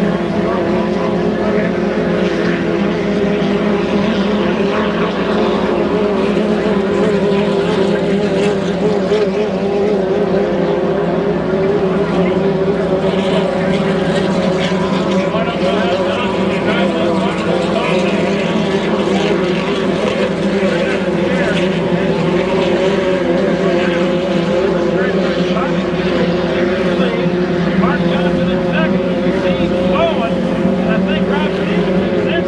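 Engines of 2.5-litre class racing hydroplanes running at racing speed: a loud, steady engine drone whose pitch wavers slightly.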